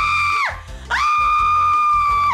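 A woman screaming in pain as a wax strip is ripped off her leg: two long, high, steady-pitched screams, the second starting about a second in.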